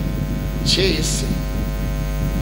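Steady electrical mains hum in the microphone and sound system, running under the pause in speech. A short spoken syllable comes through it about a second in.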